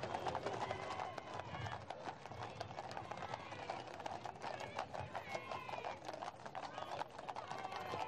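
Hooves of carriage horses and mounted escort horses clip-clopping on a paved road, many irregular knocks, over the chatter of crowd voices.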